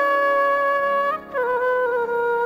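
Instrumental passage of a Hindi bhajan: a single melody line holds one long note, then breaks briefly a little past a second in and steps down to a lower held note.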